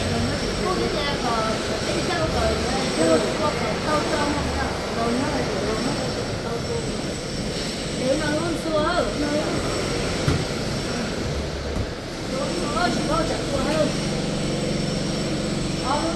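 Several people talking in a language the recogniser could not write down, over a steady low background hum.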